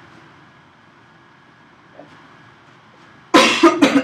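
A person coughing, two harsh coughs in quick succession near the end, after a few seconds of quiet room tone.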